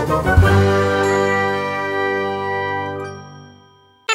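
A bright, bell-like chime chord struck about half a second in and left to ring, fading out over about three seconds.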